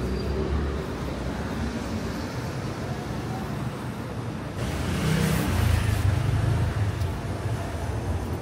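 Car traffic along a narrow city street, a steady low rumble, with one car passing close about five seconds in, louder for a second or two.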